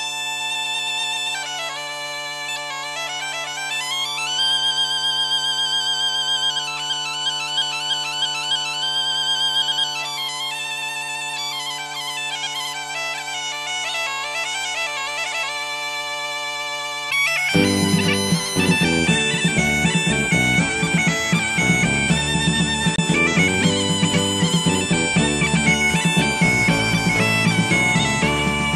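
Background music led by a bagpipe playing a melody over its steady drone. About 17 seconds in, a full band joins and the music becomes louder and fuller.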